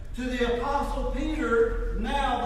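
Only speech: a person talking, with a steady low hum underneath.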